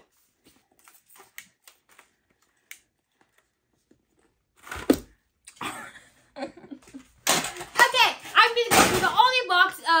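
A few faint light clicks of handling, then a single sharp thump about five seconds in. Near the end, loud excited shrieks and laughter with another heavy thud among them.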